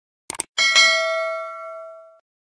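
Subscribe-button animation sound effect: a quick double mouse click, then a bright notification-bell ding that rings out and fades over about a second and a half.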